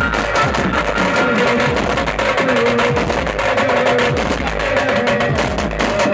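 Hyderabad pad band playing teenmaar music: fast, dense drumming under a held melody line from the band's wind instruments.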